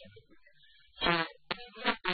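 A man's voice: a pause of about a second, then a drawn-out voiced sound and talking resumes.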